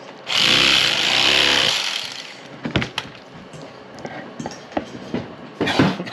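Electric fillet knife buzzing for under two seconds as it cuts through a crappie fillet on a wooden board, followed by scattered knocks and taps of the knife and hands on the board.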